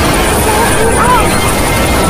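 Loud jumble of many overlaid video soundtracks playing at once: garbled voice-like sounds and tones that wobble up and down in pitch, over a constant dense noise.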